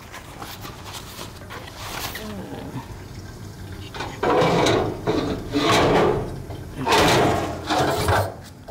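Black plastic bag rustling and crinkling as it is handled, in three loud swells over the second half.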